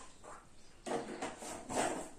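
A small plastic cup and lid handled and set down on a hard tabletop: a few soft rubbing and scraping sounds in the second half.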